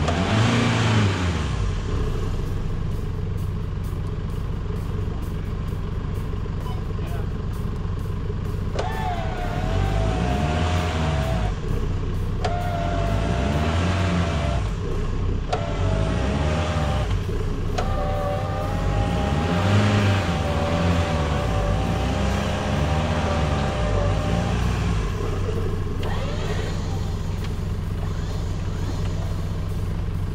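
An electric winch on a stuck Chevrolet Colorado ZR2 Bison whining as it pulls the truck through mud toward a tree anchor, in four or five bursts with short pauses starting about nine seconds in. An engine runs steadily underneath.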